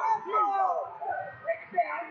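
Several voices shouting over one another, high-pitched yells from coaches and spectators at a youth wrestling bout.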